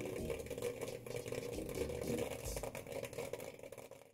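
Kettle popcorn machine running: a steady motor hum with a scatter of small ticks, fading out near the end.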